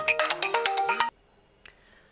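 A phone ringtone playing a simple electronic melody of held, stepping notes, which cuts off suddenly about a second in, leaving near silence.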